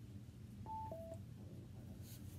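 A faint two-note electronic beep about a second in, a higher tone followed at once by a lower one, from a phone or tablet.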